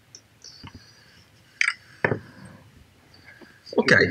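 Quiet room with two sharp clicks, about a second and a half and two seconds in, and a few fainter small noises; a man says "Ok" at the end.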